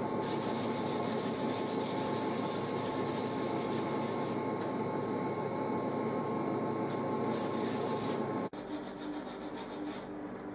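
Abrasive paper on a hand-held sanding block rubbed back and forth along a wooden mandolin neck in steady, even strokes, sanding back grain raised by wetting. About eight and a half seconds in it changes to a quieter, finer rubbing.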